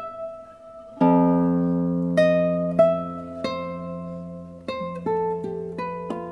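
Two classical nylon-string guitars playing together. A full chord is struck about a second in and rings on under a slow line of single plucked notes.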